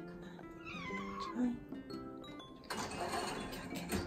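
A cat meows once, a call that falls in pitch, about a second in, over background music with plucked notes. A rustling noise follows for about a second near the end.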